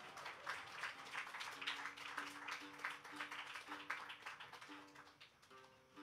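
A small audience clapping scattered applause after a song, dying away near the end. Under it, a guitar quietly plays a few soft, held single notes.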